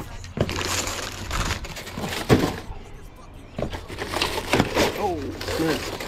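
Shrink-wrapped cases of plastic water bottles being handled and set down on brick paving: plastic crinkling and a few sharp knocks, the loudest about two seconds in. Near the end a voice hums or mutters.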